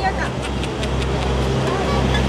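A steady low motor hum under faint background voices.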